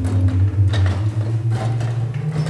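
Pipe organ holding low, sustained bass notes that step upward near the end. Sharp mechanical clicks and knocks from the organ console, stop knobs and key action, sound over the notes.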